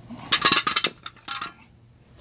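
Steel air brake parts (shoe rollers, return spring and brake shoe) clinking and clattering as they are handled and set down on pavement: a rapid cluster of metallic clinks in the first second, then a few softer ones.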